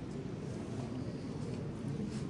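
Low, steady murmur of a crowd in a hall, with no single voice standing out.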